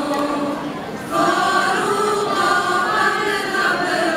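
An Aramean church choir of women's voices singing in unison, holding long notes; the sound dips briefly and a new phrase begins about a second in.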